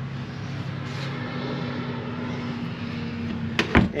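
Steady low mechanical hum with a fixed tone throughout, then two sharp clicks near the end as a door or cabinet door in the fish house is handled.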